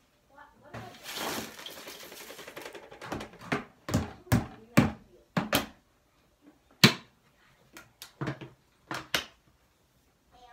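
Handling noise around an empty plastic storage tote and scattered dry debris: a rattling rush for about two seconds, then about a dozen sharp knocks and thumps at irregular spacing.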